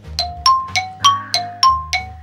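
Quiz thinking-time sound effect: a string of short bell-like ding notes, about three a second, alternating between two pitches, over a soft bass line of background music.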